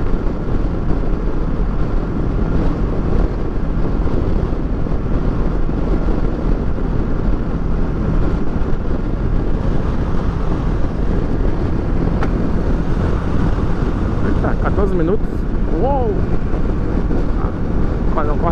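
Kawasaki Versys 650 parallel-twin engine running steadily at highway cruising speed, with a constant rush of wind on the helmet-mounted microphone.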